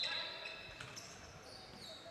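Faint sounds of a basketball game on a hardwood court: a ball bouncing a couple of times and high-pitched sneaker squeaks on the floor.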